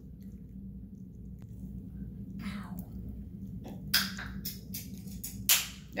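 A child biting into corn on the cob: from about halfway in, a quick run of short crisp bites and crunches, the loudest near the end. A low steady hum runs underneath.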